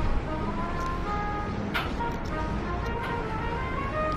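Background music of soft held notes over a low steady hum of room noise.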